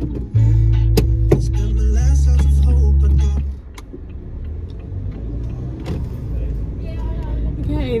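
Car engine pulling away: a loud low rumble comes in suddenly just after the start, with a couple of sharp clicks about a second in, then eases to a quieter steady running sound about halfway through.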